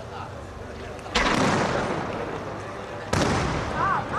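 Cylinder firework shells going off: two loud booms about two seconds apart, each echoing away slowly.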